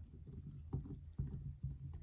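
Faint, irregular small clicks of a deadbolt cylinder's end cap being turned and tightened by hand, clicking over its retaining pin.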